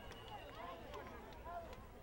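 Faint, distant voices of players and spectators calling out across an open soccer field, heard as scattered short shouts over a low background rumble.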